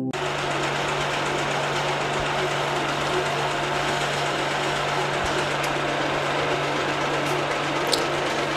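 A small machine running steadily, an even mechanical whir over a constant low hum.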